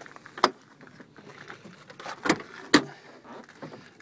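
Pickup truck's rear door being unlatched and swung open: three sharp clicks and knocks from the latch and door, the loudest near the end, with faint handling noise between them.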